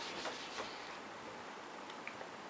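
An eraser scrubbing back and forth on a workbook's paper page, with several quick rubbing strokes in the first half second or so and then fainter rubbing.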